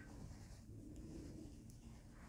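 Faint sounds of hand knitting: knitting needles working yarn, with a few light ticks of the needles.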